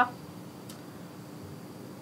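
Quiet room tone with a faint steady hum, and one small tick less than a second in.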